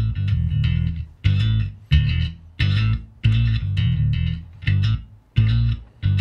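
Electric bass played through a CEX octaver pedal set for a slightly synth-like, oscillating tone: a riff of short note groups, each cut off by a brief gap, about eight in all.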